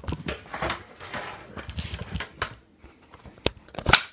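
Close handling noise: irregular rustles and scrapes with a few sharp clicks, the two loudest near the end, as a handheld camera is gripped and moved.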